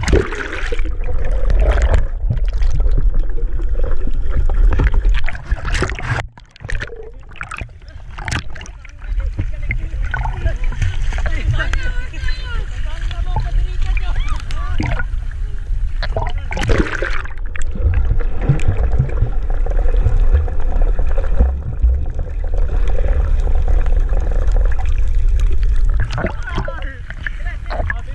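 Sea water splashing and sloshing around swimmers close to the microphone, over a constant low rumble of water and wind on the mic, with people's voices throughout. About six seconds in the sound drops and goes dull for two or three seconds.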